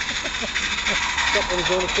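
Steady hiss of a small live-steam garden-railway locomotive approaching with its train.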